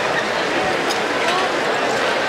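Crowd chatter: many spectators talking at once in a steady murmur, with no single voice standing out.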